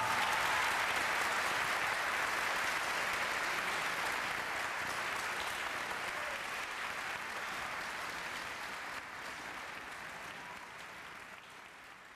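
Concert audience applauding after the final chord of a piano concerto, the clapping steady at first and then gradually fading away.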